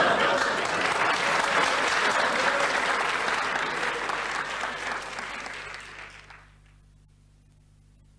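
Audience applause that gradually dies away, ending about six and a half seconds in. Only a faint low hum and hiss remain after it.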